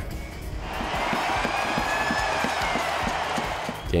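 Hockey arena's final buzzer sounding for about three seconds over a crowd cheering, marking the end of the game.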